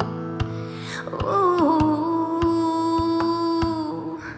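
Live pop song with band accompaniment; about a second in, a female singer slides into a long held wordless note over the band.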